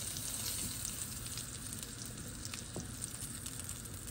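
Scallops sizzling in hot fat in a cast-iron skillet over medium-high heat, a steady crackling fry with a few faint clicks.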